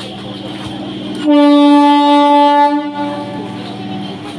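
Electric suburban train's horn sounding one steady, single-pitched blast of about a second and a half, starting a little over a second in, over a steady hum.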